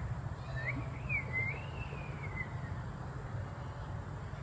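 A bird's warbling whistled call, gliding up and down in pitch, begins about half a second in and lasts about two seconds, over a steady low hum.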